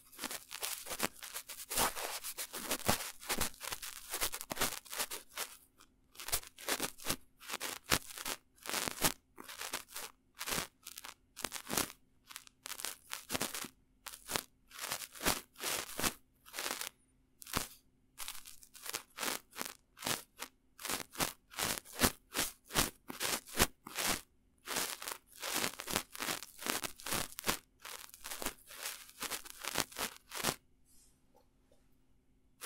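Bristles of a small artist's paintbrush brushed directly across a handheld recorder's microphones in short scratchy strokes. The strokes come fast and close together in the first few seconds, then settle to about two a second.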